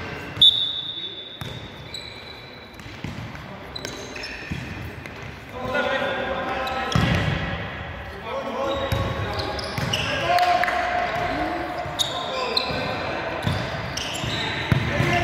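Futsal ball kicked with a sharp knock about half a second in, with squeaks from shoes on the sports-hall floor, echoing in the hall. From about five seconds in, players shout to each other over the play, with further ball knocks.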